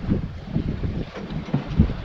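Wind buffeting the camera microphone in an uneven low rumble aboard a sailboat under way.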